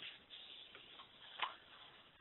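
A few faint, soft clicks over low background hiss, heard through a telephone-band conference line.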